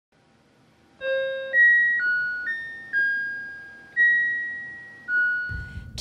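A short keyboard jingle of seven single high notes in a slow melody, beginning about a second in. Each note is struck and then fades away.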